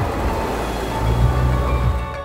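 Porsche 911 Turbo flat-six engine and tyres passing close by: a steady hiss of road noise with a low engine note that grows louder about a second in and holds.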